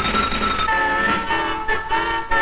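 Music of a 1960s NET television station ident. A high steady tone with a fast flutter gives way, about two-thirds of a second in, to sustained chords of several held notes that change a few times.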